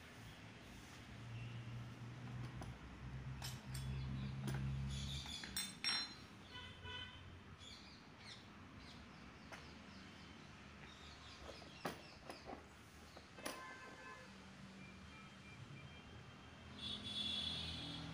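Quiet background with a low hum for the first few seconds, a few scattered sharp clicks, and faint high chirps now and then.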